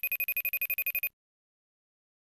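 Telephone ringing: one fast trilling ring of about fifteen pulses a second, lasting about a second before it cuts off, signalling an incoming call.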